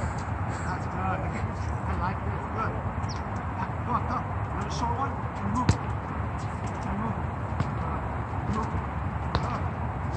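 Light taps of a soccer ball being dribbled on a hard outdoor court, with one sharp kick a little past halfway, over a steady low rumble and faint distant voices.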